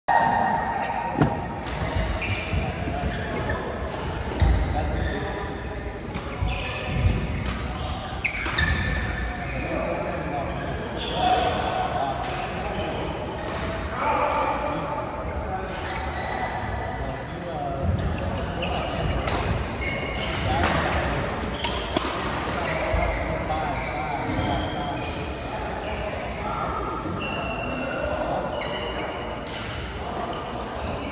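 Badminton rackets striking shuttlecocks in scattered, irregular hits, with sports shoes squeaking on the court floor, in a large echoing sports hall. Voices talk in the background.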